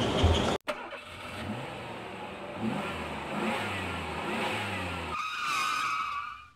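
A motor vehicle engine running and accelerating, its pitch climbing in several rising sweeps, after an abrupt cut about half a second in. Near the end a steady high tone comes in over it.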